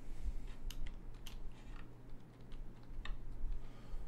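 A string of irregular light clicks and taps through the first three seconds, the last one about three seconds in the sharpest, over a steady low hum.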